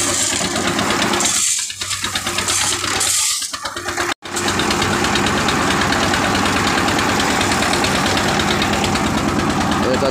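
Concrete mixer's engine running steadily with a very loud, even rhythm while its hopper is loaded with crushed stone. The sound cuts out for an instant about four seconds in.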